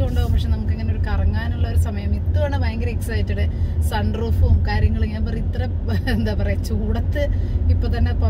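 A woman talking over the steady low rumble of a moving car, heard from inside the cabin.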